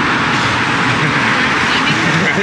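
Steady outdoor street noise, with the indistinct voices of a group of people talking.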